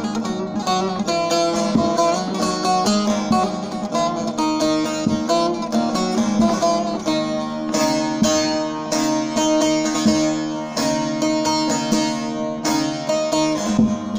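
Bağlama (long-necked Turkish saz) played solo: a fast strummed and picked instrumental passage, quick melody notes over low open strings that keep ringing beneath them.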